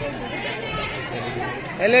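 Background chatter of several people's voices, with a man's speech starting up again loudly near the end.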